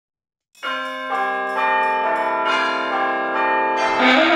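Church bells ringing, starting about half a second in: several strikes at different pitches, each ringing on under the next.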